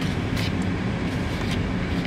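Steady low rumble of vehicle and traffic noise heard from inside a car's cabin, with a couple of faint clicks.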